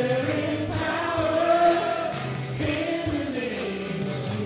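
Live worship music: several voices, men and women, singing together over acoustic guitars and a drum kit, with a steady beat.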